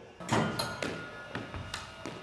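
Squash ball impacts in a reverberant court: a hard knock about a quarter second in, then a few lighter knocks, each ringing briefly off the walls.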